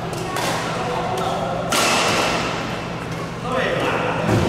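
Badminton play in an indoor hall: sharp hits, typical of rackets striking a shuttlecock, about half a second in and again near the two-second mark, over voices in the background.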